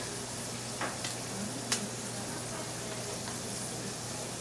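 Burger patties and French toast frying in stainless steel pans, a steady sizzle with a few light clicks about a second in.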